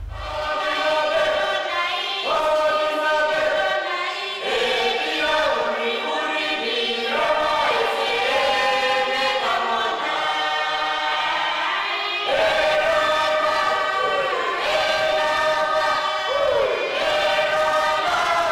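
Mixed choir of men and women singing a Motu peroveta (prophet song) hymn unaccompanied in parts, in long held phrases with short breaks between lines.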